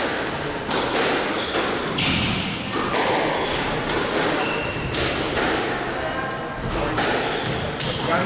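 Squash rally: the ball struck by rackets and hitting the court walls, a series of sharp knocks coming about once a second or faster, with a few short high squeaks of shoes on the wooden floor.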